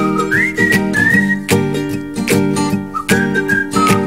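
Intro of a pop song: a whistled melody over plucked strings and a steady beat.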